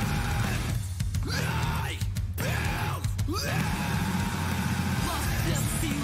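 Alternative hardcore rock track playing loud and dense, with short stop-start breaks about one, two and three seconds in before it runs on steadily.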